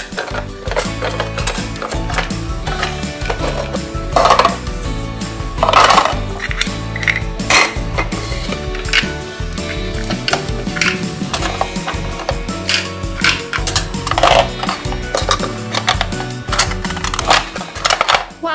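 Background music, over which hard plastic toy food pieces click and clatter as they are set into the shelves and door racks of a plastic toy refrigerator. There are a few louder knocks about four, six and fourteen seconds in.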